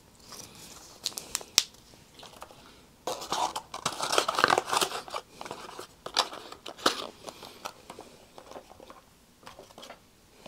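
Small plastic eye-drop bottles being handled and swapped on a desk: a few sharp clicks early on, then a stretch of rustling and clicking from about three to seven seconds in.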